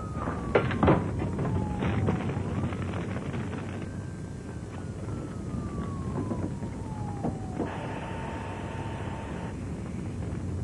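Fire engine siren winding down, then winding up again about two and a half seconds in and falling slowly, before a steady tone is held for about two seconds near the end. A couple of sharp knocks sound about a second in.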